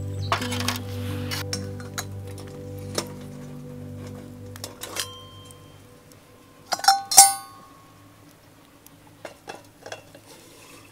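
Stainless steel pot-oven lid clinking with a short ring about five seconds in, then clattering loudly twice around seven seconds. Scattered small ticks of a wood fire crackling, and background music that fades out about midway.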